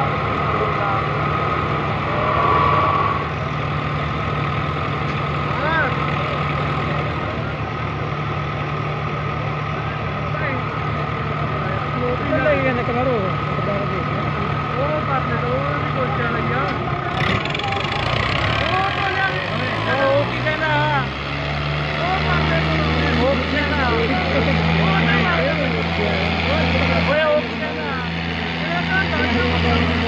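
Diesel engines of two tractors, a Swaraj 855 and a Preet 6049, running hard as they pull against each other in a tug-of-war. About seventeen seconds in, the engine note drops and then climbs back up over a few seconds as they are revved again. Crowd voices and shouts run throughout.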